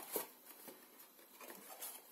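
Faint rustle and a few light ticks of card being handled as slit paper box pieces are slotted together, with one slightly sharper click just after the start.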